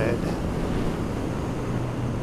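Wind rushing over the microphone of a Honda CB650F at highway speed, with the bike's inline-four engine holding a steady drone underneath.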